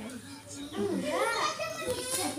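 Children's voices: kids chattering and playing, with high voices rising and falling from about a second in.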